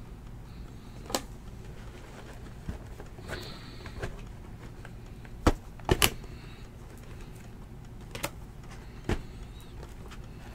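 Shrink-wrapped cardboard trading-card boxes being handled and set down on one another while being stacked: scattered light knocks and taps, the sharpest a quick pair about six seconds in, over a low steady hum.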